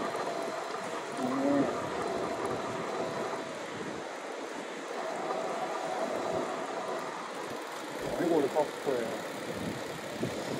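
Steady rolling and wind noise from an electric-assist bicycle riding along a paved street, with a voice muttering briefly about a second in and again near the end.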